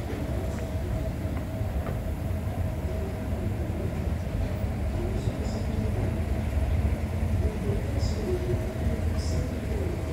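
Escalator running with a rider on it: a steady low mechanical rumble with a constant hum above it and a few faint ticks.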